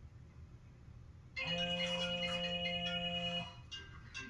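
Mobile phone ringtone starting about a second and a half in: a steady chord held for about two seconds, then a run of shorter notes as the ringing goes on.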